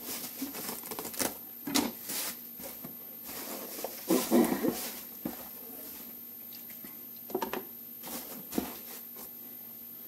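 Plastic bubble-wrap packaging rustling and crinkling as paint cans are unwrapped and lifted out of a cardboard box, with a few light knocks of the cans being handled. The crackling is irregular, busiest about four to five seconds in.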